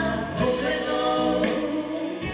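A female pop singer singing live into a microphone with a full backing band, the sound carrying through a concert hall.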